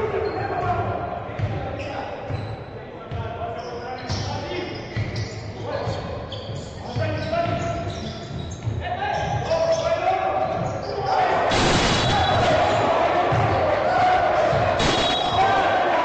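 Basketball dribbled and bouncing on a wooden court in a large, echoing sports hall, under voices. The voices and hall noise grow louder about two-thirds of the way through.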